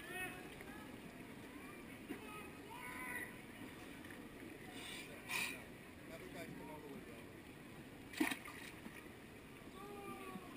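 Pool water lapping and sloshing against the wall as a swimmer shifts in the water at the backstroke start, with two short splashes about five and eight seconds in. Faint distant crowd voices underneath.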